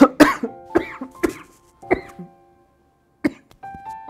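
A man's coughing fit: a loud cough at the start, then a string of weaker coughs over the next two seconds and one more about three seconds in. Dust in the throat, from handling old archival paper, brings it on.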